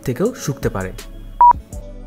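Speech ending about a second in, then a single short, loud electronic beep of a quiz countdown timer over steady background music.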